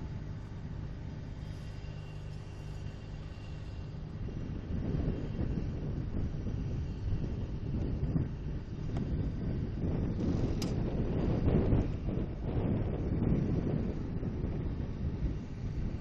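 Fire truck engines running with a steady low hum. About five seconds in it gives way to a louder, uneven low rumble that swells in the middle and then eases off.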